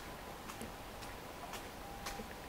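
Footsteps of someone walking on a paved path, a light click about twice a second, over a faint hiss and a faint steady tone.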